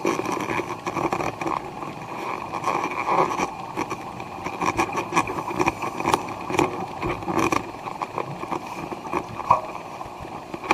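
Underwater recording of an underwater vacuum running: a steady mechanical hum, with many scattered short clicks and crackles throughout.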